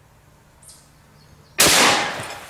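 A single rifle shot firing a .44 Magnum round about one and a half seconds in, the report trailing off in a long echo.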